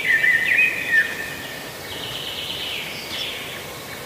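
Songbirds chirping and warbling over a steady outdoor background hiss, with the busiest calls in the first second or so.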